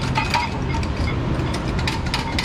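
Dense, rapid metallic clinks and clatter of hand tools working on the underside of a car during transmission removal.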